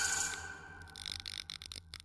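The tail of an electronic intro music sting dying away within the first half second, then faint, irregular crackling clicks.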